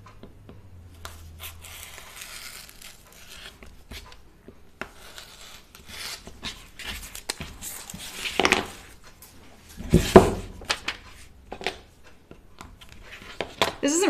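Fabric and paper pattern pieces being handled and crinkled on a cutting table, with small clicks and knocks from tools being picked up and set down. It gets louder about eight seconds in, and a thump comes about ten seconds in.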